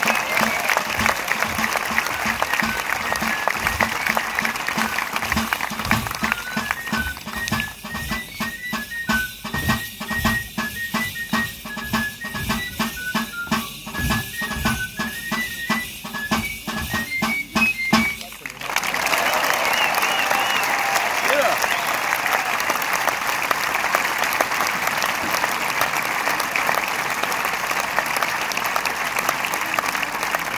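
A high flute melody over regular drum beats, playing Basque dance music, stops sharply about two-thirds of the way through. Applause follows straight after, with some voices in the crowd.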